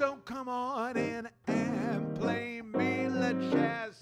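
A male singer performing a jazz song, accompanying himself on piano. He sings in short phrases with pitch slides between notes, broken by brief pauses about a second and a half in and near the end, with piano chords under the voice.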